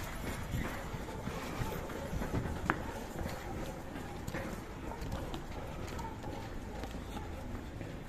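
Footsteps of several people walking down concrete stairs, an uneven run of steps with clothing rustle, plus one brief sharp click a little under three seconds in.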